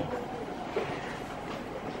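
Steady background noise: room tone with a low, even hiss and no distinct events.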